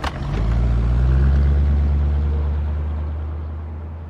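A minivan's sliding door clicks shut, then the van pulls away: a loud low engine hum that swells for about a second and then slowly fades as it drives off.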